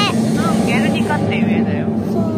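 Loud, echoing soundtrack of an immersive projection show in a stone quarry cave: a deep, steady rumble with a few brief high voices over it.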